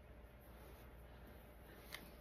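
Near silence: room tone, with a faint, brief rustle of a cotton T-shirt being handled near the end.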